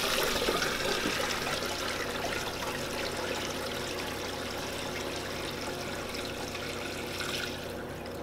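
Liquid indigenous microorganism solution poured from a plastic bucket through a wire mesh strainer into a sprayer tank: a steady splashing stream that slowly weakens and dies away near the end.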